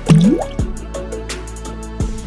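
A single water 'bloop' with a quickly rising pitch just after the start, over background music with a steady beat.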